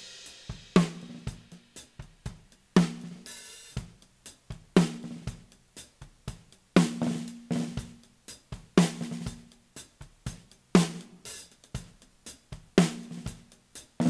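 Snare drum soloed from a multitrack studio recording, the top snare mics (Beyerdynamic M201 and AKG 414) blended with a Neumann KM84 under the snare. A backbeat hit comes about every two seconds, each with a short ring, and fainter hi-hat spill and lighter strokes fall between.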